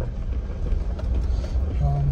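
Inside a car driving on an unpaved gravel road: a steady low rumble of the engine and tyres on gravel, with a few faint rattles.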